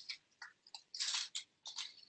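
Green construction paper crinkling and rustling in a string of short, crackly bursts as the tabs of a taped paper tube are folded back by hand.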